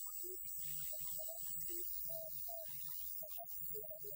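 Steady low electrical hum, with short, broken pitched sounds over it.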